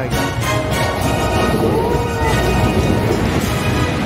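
Background music with steady held tones, laid over the footage.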